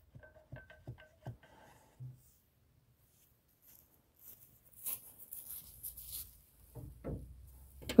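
A few faint knocks with a short metallic ring in the first second or so: the wooden rammer seating the paper-wrapped golf ball in the bore of a steel 1/3-scale M1841 6-pounder cannon. After that only faint scattered rustles.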